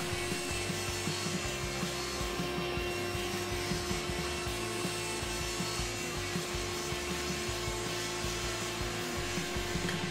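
Table saw running steadily while milling a rabbet along a walnut molding strip.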